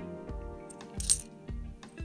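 A 50p coin clinks once, sharp and bright, about a second in as coins are handled in the palm. Background music with a steady beat plays throughout.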